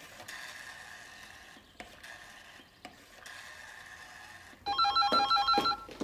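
An old telephone being dialled, its dial whirring back three times, each run ending in a click. Near the end an electronic phone trills loudly for about a second, with a fast pulsing warble.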